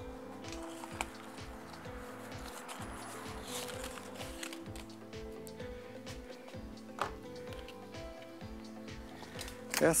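Soft background music with held notes over a steady low beat, with two short clicks, about a second in and near seven seconds.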